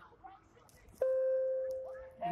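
A steady tone of two close notes starts suddenly about a second in and holds for about a second, slowly fading. Faint voices come before it.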